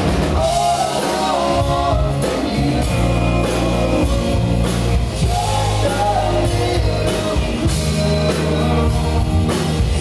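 Live rock band playing through a PA: male lead vocals over electric guitar, bass and a drum kit.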